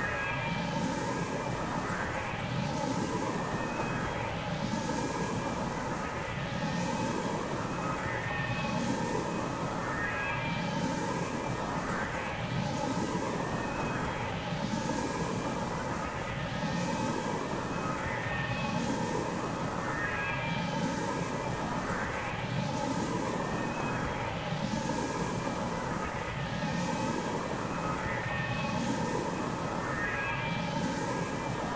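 Electronic noise drone: a dense, steady wash of noise with several held tones, swept by a rising whoosh that repeats about every second and a quarter.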